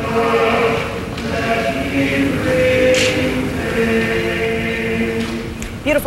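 Male a cappella vocal ensemble singing slow, sustained chords in several parts, each chord held for a second or two before moving to the next.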